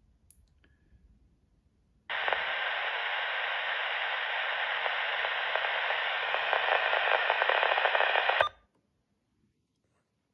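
Uniden Bearcat BC125AT scanner's speaker giving a burst of static hiss, the squelch opening as the search stops on a signal. It starts abruptly about two seconds in, holds steady with a faint rapid crackle for about six seconds, and cuts off sharply when the squelch closes.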